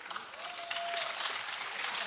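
Audience applause, starting as the singing fades and building over the first half second into steady clapping.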